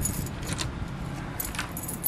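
A bunch of keys jingling in a hand as it turns a lever door handle, in short jingles near the start, about half a second in, and again near the end.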